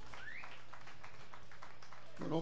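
A lull between songs at a live band show: a steady low hum from the stage amplification, with faint scattered taps and one short rising whistle-like tone just after the start.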